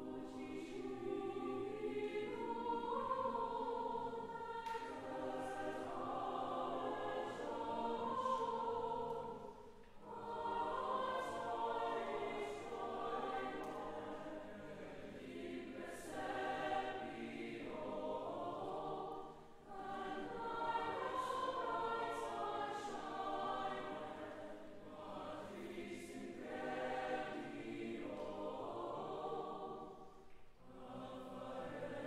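Mixed choir of men's and women's voices singing sustained phrases in parts, breaking briefly between phrases about ten seconds in and again just before twenty seconds.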